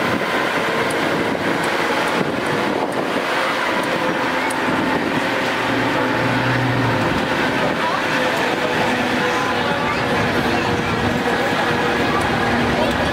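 Open-air passenger tram running, a steady vehicle hum, with people's voices and chatter mixed in.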